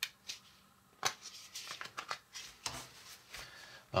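Hands handling a paper instruction booklet and a plastic toy track piece: scattered light clicks and rustles.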